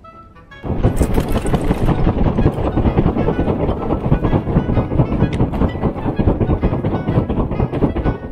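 Plastic hand fan (uchiwa) waved hard right by the microphone to fan a charcoal fire, its air gusts buffeting the mic in a loud, dense rumble of rapid surges that starts suddenly about a second in.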